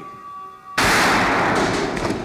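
Movie sound effect of a pistol shot: a sudden loud blast about a second in that stays loud for a moment and then fades with a long noisy tail.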